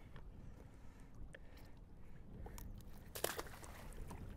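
Faint water lapping at an aluminium boat hull over a low wind rumble, with a brief splash at the surface beside the hull about three seconds in.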